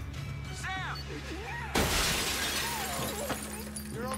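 A glass pane shattering suddenly about two seconds in, with the breaking glass falling and fading over about a second.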